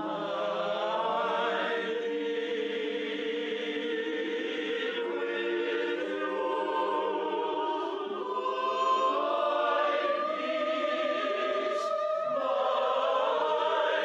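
A mixed choir singing in long, held notes, phrase after phrase, with brief breaks between phrases.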